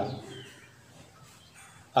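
A man's voice trails off, then a rooster crows faintly in the background during the pause.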